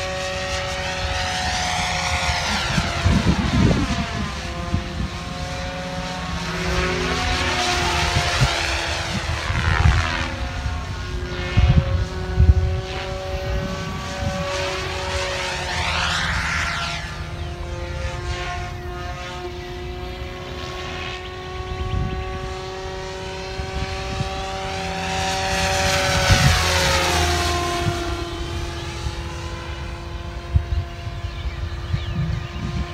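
Goblin 570 Sport electric RC helicopter in flight: its rotor blades and electric motor give a steady whine of several tones. The pitch swings up and down several times as the helicopter passes back and forth.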